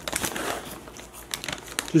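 Plastic candy wrapper crinkling in irregular crackles, loudest at the start.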